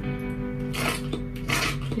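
Background music with steady sustained tones, over which a foam-cleanser pump bottle gives two short airy squirts, a little under a second apart, as foam is dispensed into a palm.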